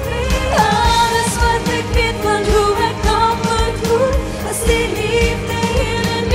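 A woman singing a pop song into a handheld microphone, holding and gliding between long notes over a backing track with a steady beat.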